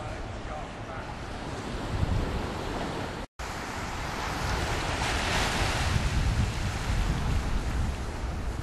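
Wind buffeting the microphone over small waves washing onto a sandy beach. The sound cuts out for an instant about a third of the way in, then a wave's wash swells and fades about five seconds in.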